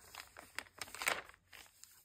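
Thin pages of a Hobonichi planner being turned and smoothed flat by hand: faint papery rustling, with a couple of louder swishes around the middle.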